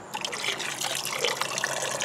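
Water running off the long dangling roots of a water hyacinth just lifted out of a tub pond, trickling steadily back into the water below.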